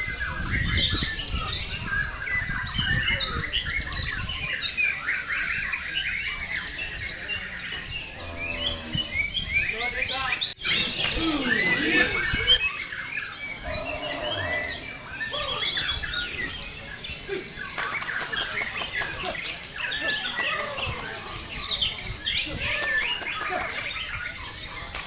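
Caged white-rumped shamas (murai batu) singing in competition: a dense chorus of overlapping whistles and chirps. Through the second half one bird repeats a thin high whistled note over and over.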